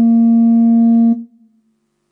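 A single loud, steady held musical note, one unwavering pitch with rich overtones, that cuts off abruptly a little over a second in; after that, near silence with a faint low tone.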